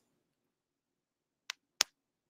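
Near silence, then two short, sharp clicks about a third of a second apart near the end, the second louder.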